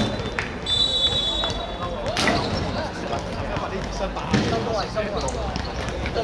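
Players calling out during a small-sided football game on an outdoor hard court, with sharp thuds of the ball being kicked or bouncing every couple of seconds. A high steady tone sounds briefly near the start.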